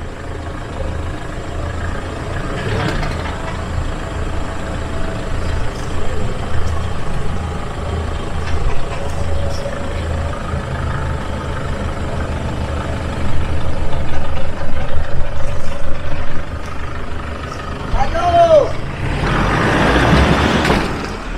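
Engine of a Toyota Hilux 4x4 pickup running at low speed as it crawls over a log bridge, with louder stretches about two-thirds of the way in.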